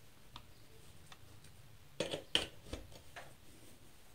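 A few light plastic clicks and knocks, the sharpest pair about two seconds in, as a three-pin plug is pushed into a socket on a power strip and its cable is moved about.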